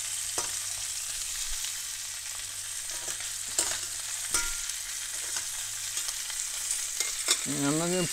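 Bacon-wrapped quails sizzling steadily in foaming butter and oil in a stainless steel sauté pan, with a few sharp clicks of metal tongs against the pan as the birds are turned.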